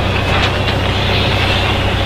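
Heavy diesel engine idling: a steady low rumble with an even, fast pulse. A couple of faint clicks come about half a second in.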